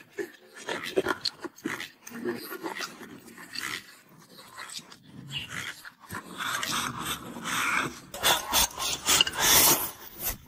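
Close-up eating sounds: a man chewing and smacking his lips over a mouthful of rice, with short wet clicks. Later, denser scraping and rustling as a utensil stirs and scoops rice in a bowl.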